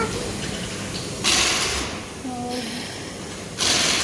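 Two short bursts from a pneumatic impact wrench loosening wheel lug nuts. The first lasts under a second, about a second in; the second, shorter one comes near the end.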